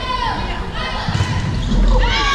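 Sneaker soles squeaking in short, quick glides on a hardwood gym court, with dull thuds of feet and ball during a volleyball rally.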